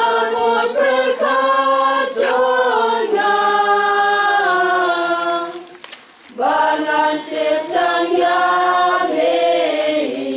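A choir of voices singing a slow hymn in long held notes, with a brief break between phrases about six seconds in.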